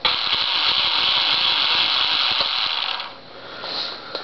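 Small electric motors and propellers of a twin-engine foam RC plane running. A steady buzz starts suddenly and dies away about three seconds in.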